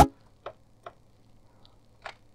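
A drum-machine beat playing back in Cubase cuts off suddenly at the start, followed by a few faint computer mouse clicks, two about half a second apart and one near the end, over a faint low hum.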